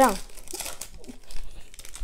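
Foil booster-pack wrapper crinkling and trading cards rustling as they are handled, in short scratchy bursts.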